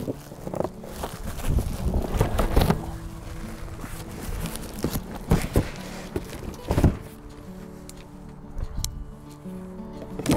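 Background music with steady held notes, over rustling and scraping of cardboard and plastic wrap as a taped cardboard box is pulled out and handled, with a few sharp knocks, the strongest one near the seven-second mark.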